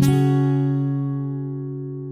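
Background music: a single strummed acoustic guitar chord struck at the start, ringing on and slowly fading.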